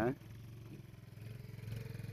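Faint, low engine hum of a motor vehicle, slowly growing a little louder toward the end.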